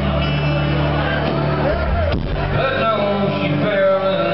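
Live country band performance: a man singing over acoustic guitar, bass and drums, recorded on a small camera with the sound a bit distorted.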